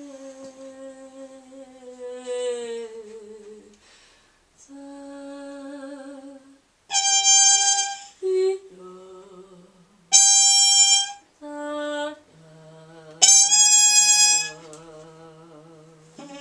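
Freely improvised trio music of wordless female voice, trumpet and bowed double bass. A sung tone slides slowly downward at first, then three short, loud, bright trumpet blasts, each about a second long, cut through. A steady low bowed bass note and wavering vocal tones come near the end.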